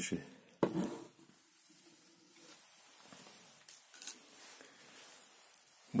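Faint handling of small plastic electronic parts on a desk: light rustling and a few soft clicks as a battery-level indicator module is picked up.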